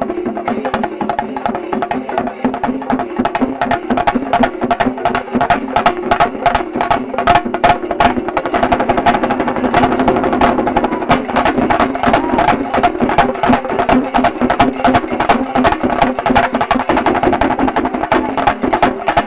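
Shinkarimelam ensemble of many chenda drums beaten rapidly with sticks, a fast driving rhythm of dense strokes that grows thicker and more intense about halfway through.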